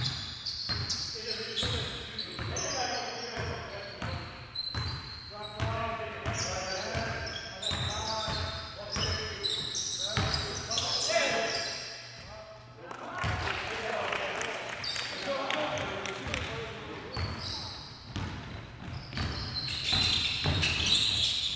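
Basketball dribbled on a hardwood gym floor, a run of bounces, with sneakers squeaking and players calling out in a large gym.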